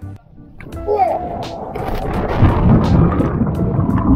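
A jump into the sea heard on an action camera: a brief shout, then a rush of noise over the microphone that grows louder as the camera hits the water and plunges under, churning through bubbles. Background music plays underneath.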